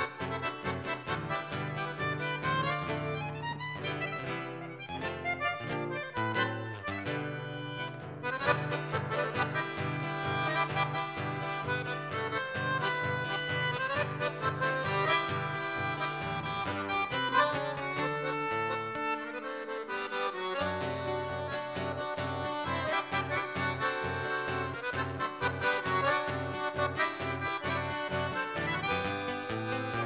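Chamamé played live by an accordion and acoustic guitar duo: the Crucianelli accordion carries the melody over the guitar's rhythmic bass notes and chords. The low bass drops out briefly about two-thirds of the way through.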